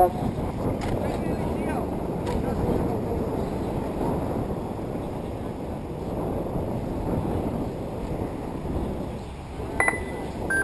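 Wind buffeting the microphone over faint distant voices. Near the end comes one short high beep from the lap-timing system as a car's transponder crosses the finish line.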